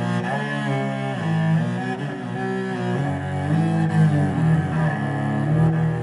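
Bowed cello playing a phrase of held notes joined by pitch slides made while the bow keeps moving, the common way of sliding on the cello.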